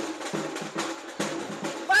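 Samba percussion, hand-held drums of a samba school's drum section, playing a steady, evenly repeating beat.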